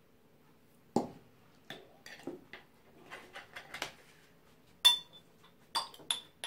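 A glass jam jar with a metal screw lid being opened and handled: a knock about a second in, a run of small clicks and scrapes, then a sharp clink with a short ring near the end, followed by a couple more clinks.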